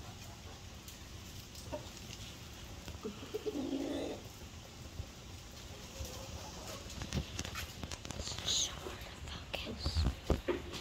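A Deathlayer hen giving one short, low murmur about three and a half seconds in, among faint knocks and rustles from handling.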